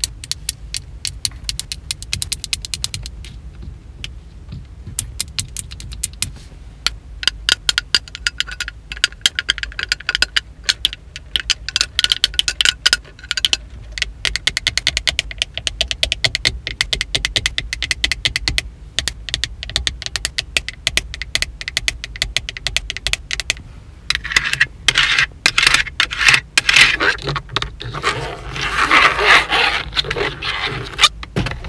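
Long acrylic fingernails tapping quickly on hard plastic car interior trim (dashboard, rearview mirror, sun visor), in fast runs of clicks with a short lull about four seconds in. Near the end the tapping turns denser and scratchier, with nails scraping over the plastic.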